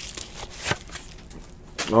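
Hands handling a cardboard trading-card box, with two small knocks of the box under a second in.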